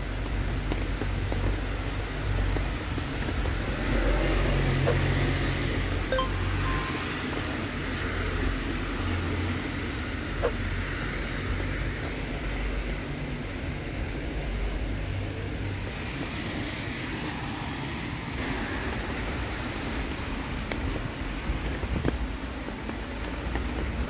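Wet city street ambience: car traffic passing on rain-soaked roads, a steady hiss over a low rumble that swells and fades, with a few small clicks.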